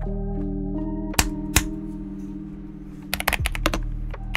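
Keystrokes on a Royal Kludge RK61 60% mechanical keyboard fitted with Akko Jelly Purple switches: two single key presses a little over a second in, then a quick run of typing starting near the end, over background music.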